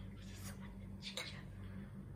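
Quiet room tone with a steady low hum and a couple of faint short clicks, about half a second and a second in.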